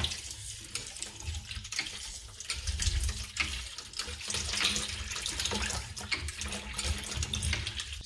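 Water pumped by a homemade PVC plunger hand pump splashing out of a garden hose back into a bucket of water, with irregular knocks of the plastic fittings.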